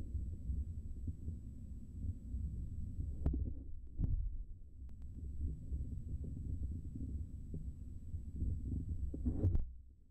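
Muffled low rumble of flowing water picked up by a submerged camera, with a few sharp clicks about three seconds in and a louder crackle near the end, after which the sound briefly drops away.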